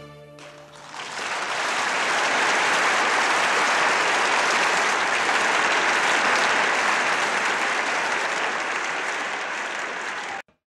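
The last notes of a piece of music die away. About a second in, audience applause swells up and holds steady.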